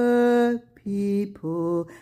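A voice singing the scripture verse in a slow chant-like melody: one long held note, a brief break, then two shorter notes, each lower than the last.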